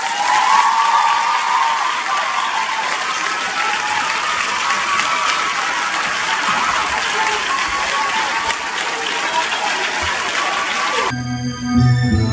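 A hall audience applauding and cheering at the end of a play, with a few voices shouting over the clapping. About eleven seconds in, the applause stops and keyboard music begins.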